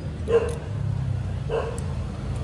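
Two short animal calls, like barks, about a second apart, over a steady low hum.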